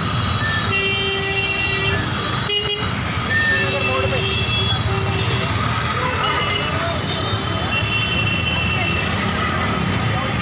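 Busy street traffic with vehicle horns honking again and again, short steady toots at several pitches, over engine rumble and a crowd's chatter.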